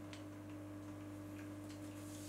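A few faint, short clicks from a pocket RGB LED video light's buttons being pressed, heard over a steady low electrical hum.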